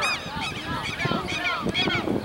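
Several voices shouting and whooping over one another in short, rising-and-falling yells, the excited shouting around a late goal.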